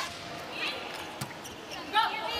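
Volleyball being struck: a few short, sharp smacks of hands on the ball as a serve goes over and is played.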